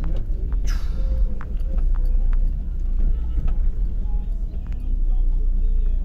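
Crowded pedestrian street: background crowd chatter with scattered clicks and rattles over a heavy, steady low rumble.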